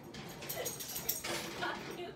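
A household pet making a few short vocal sounds, with a couple of brief pitched cries.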